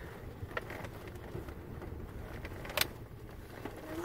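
Low, steady rumble of a car rolling slowly, heard from inside the cabin, with a couple of small clicks, the sharpest about three seconds in.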